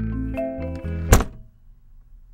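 Closing theme music with bass and chiming notes, ending about a second in on one loud thunk; after it the music stops and only a faint low hiss remains.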